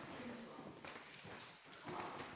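Footsteps on a wooden parquet floor, a few soft knocks, with faint voices in the room.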